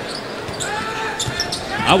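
A basketball being dribbled on a hardwood court, a few short thuds over the steady murmur of an arena crowd.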